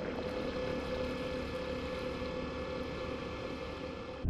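Steady underwater hum and rush, with a faint held tone running through it and no sudden sounds.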